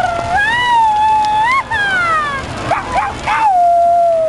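A person howling in one long, loud call. A held note with a slight waver slides up in pitch, then breaks into falling swoops and a few short upward yelps, and holds steady again near the end.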